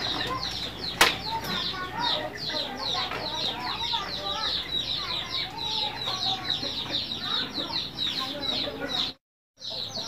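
Chickens: a dense, steady run of high, falling peeps, several a second, with lower clucking beneath. There is one sharp click about a second in, and the sound drops out briefly just before the end.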